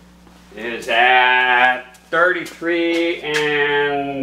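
A man's voice in drawn-out, sung or hummed notes, three or four short phrases, over a faint steady hum.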